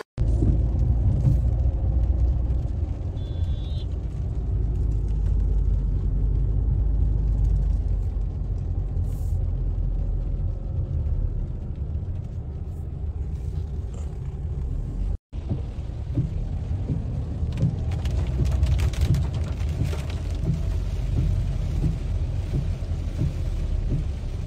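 Steady low rumble of a car's road and engine noise heard from inside the cabin while driving. The sound breaks off sharply for a moment about fifteen seconds in, then carries on.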